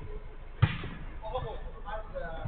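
A football struck once: a single sharp thud about half a second in, with players' voices calling out after it.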